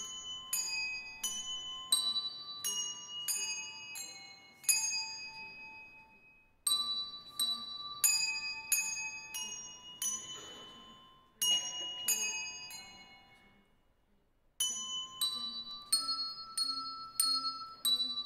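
Children's handbell choir playing a melody: single bell notes struck one after another, one or two a second, each ringing out and fading. The playing stops briefly twice between phrases.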